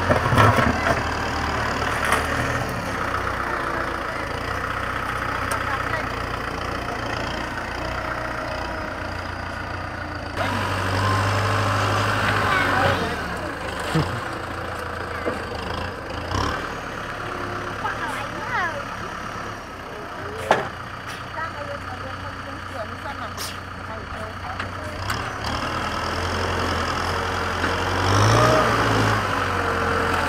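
Kubota M6040 SU tractor's diesel engine running as its front dozer blade pushes a heap of soil, a steady low hum that grows louder for a few seconds about a third of the way in and again near the end as the tractor works the pile.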